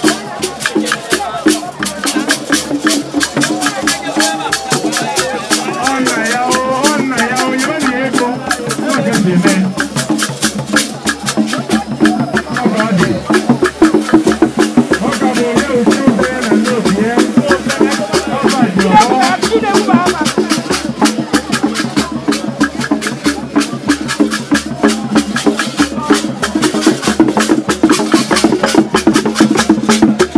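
Percussion music with shaken rattles and struck wood, keeping a fast, steady beat, with voices singing or calling over it.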